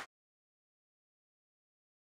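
Complete silence: the audio track is blank.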